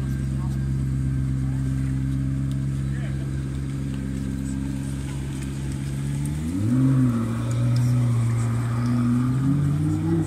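McLaren P1's twin-turbo V8 idling steadily, then revving up sharply about two-thirds of the way through as the car moves off, running at higher, varying revs after that.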